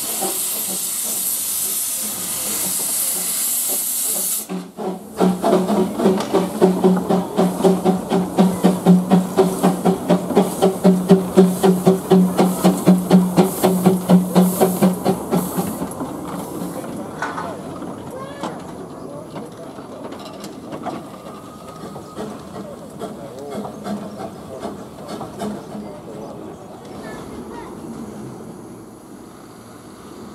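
Narrow-gauge steam locomotive: a loud hiss of steam for the first four seconds or so, then about ten seconds of fast, even pulsing, about three beats a second, over a steady low hum, which gives way to quieter rumbling for the rest.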